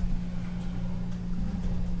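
Steady low hum with a faint rumble beneath it, holding one even pitch in a pause between speech.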